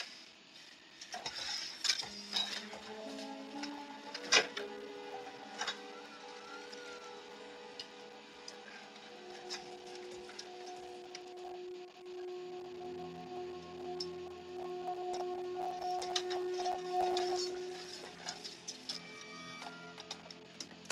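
Film soundtrack music with long held notes that change about twelve seconds in, over scattered small clicks and knocks from the scene, the sharpest about four seconds in.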